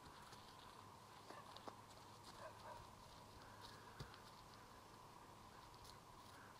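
Near silence: a faint steady hum with a few soft, scattered thuds and ticks from a Paint horse's hooves as it walks on grass, the clearest about four seconds in.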